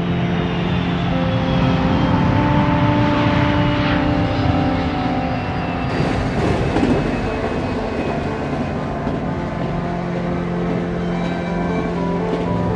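Running noise of a moving train, with a louder rush about six seconds in, under a low, sustained drone of held musical tones.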